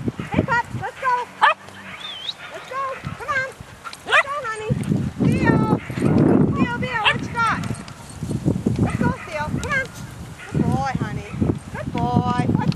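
A group of puppies yipping, yelping and barking over one another in rough play-biting, with many short high calls throughout and a burst of louder, rougher noise about halfway through.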